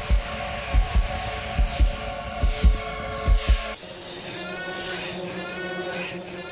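Heartbeat sound effect, a double thump about every 0.85 s, over a sustained droning music chord. About three and a half seconds in, both cut off abruptly and give way to a high hissing texture with repeating warbling sweeps.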